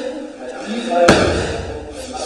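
A thrown person landing on a gym mat in a breakfall: one sharp slam with a deep thud about a second in.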